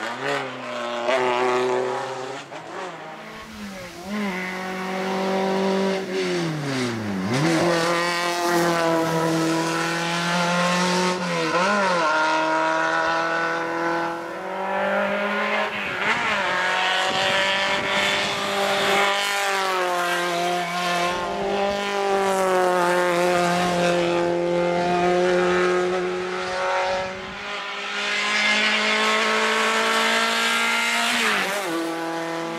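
Škoda Favorit hillclimb race car's engine revving hard through the gears, its pitch climbing and dropping repeatedly with gear changes and corners, with a deep drop about seven seconds in.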